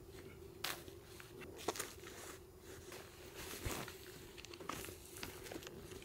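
Faint rustling and crinkling with a few soft, scattered knocks as insulation batts are handled and laid onto a plastic vapour barrier.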